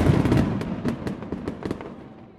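A dense crackle of many sharp pops that sets in suddenly and fades away over about two seconds.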